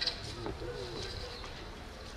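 A brief rustle right at the start, then a bird cooing faintly: one low, wavering call from about half a second in, lasting roughly half a second.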